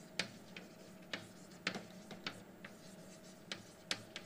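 Chalk writing on a blackboard: a faint run of short, sharp chalk taps and strokes at irregular intervals, about eight in four seconds.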